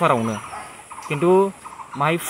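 A man's voice: a drawn-out syllable falling in pitch at the start, then a second held syllable about a second in, part of his talk.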